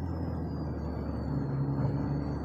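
Steady low hum of a car running, heard from inside the cabin, with a faint high whine that slowly falls in pitch.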